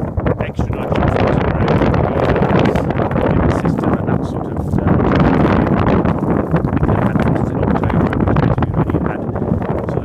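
Wind buffeting the microphone of a handheld camera, a loud, gusting rumble.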